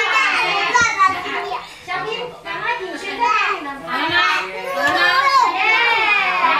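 Young children playing, their high voices chattering and calling out over one another, with a few short low thumps.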